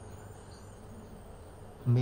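A pause in speech: steady faint background hum and hiss, with a man's voice starting just before the end.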